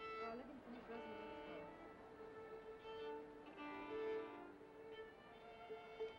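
String quartet playing, with a violin carrying long bowed notes over the lower strings in phrases that swell and fall away.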